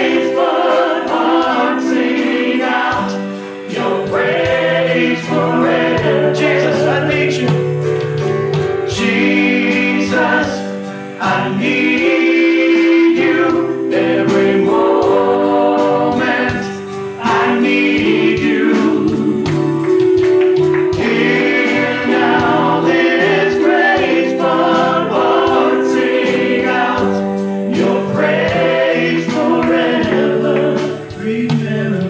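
Gospel worship song sung by a group of women and men on microphones, with band accompaniment and a steady percussion beat, pausing briefly between phrases.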